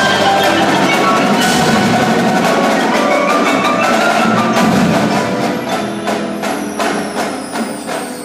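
Indoor percussion ensemble playing, with marimbas and other mallet keyboards prominent. The full, dense texture thins about five seconds in to separate struck notes that ring and fade.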